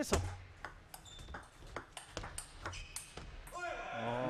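Table tennis rally: the plastic ball clicking sharply off the paddles and the table in an irregular run of quick hits.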